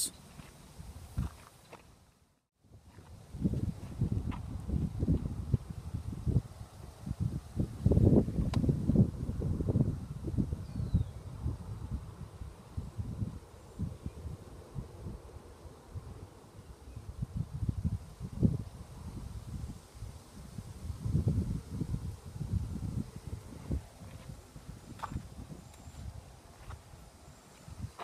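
Gusty wind buffeting the microphone: an irregular low rumble that swells and fades, with a brief silent gap about two seconds in.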